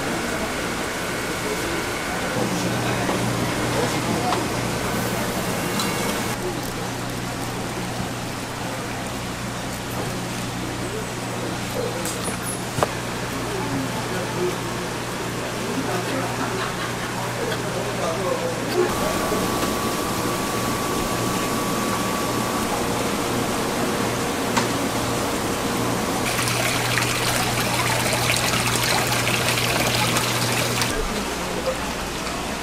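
Seafood-market ambience: a steady low hum with water trickling and splashing in live-crab tanks, loudest near the end.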